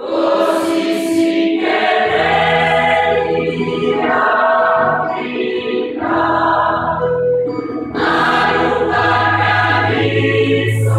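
A large gospel choir of mostly women's voices, with a few men, begins singing together all at once and carries on in full voice. A low bass part joins about two seconds in.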